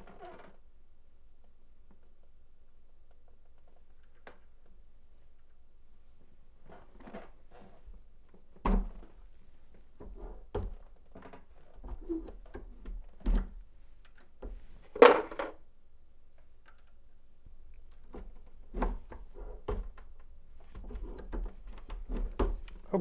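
Turret reloading press worked by hand to size brass rifle cases: scattered metal clunks and clicks as cases are set in the shell holder and the ram is cycled, with a louder clack about fifteen seconds in.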